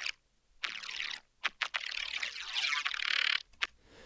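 Soloed upper-mid band of a neuro bass synth bassline playing dry, without compression. It has a sweeping, modulated texture and a shrill edge in the upper mids. It starts about half a second in and stops shortly before the end.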